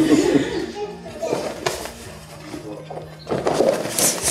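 People's voices in a room, with a couple of short knocks about a second and a half in.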